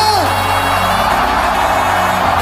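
Live electronic dance music holding steady low synth notes under a large crowd's cheering. A man's long drawn-out shout tails off just after the start.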